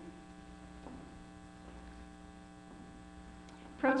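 Steady electrical mains hum, an even buzz with many overtones, carried on the auditorium's audio feed. A woman's voice starts speaking right at the end.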